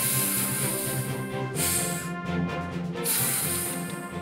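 Cartoon hissing puffs of air, three bursts (long, short, long), over steady background music.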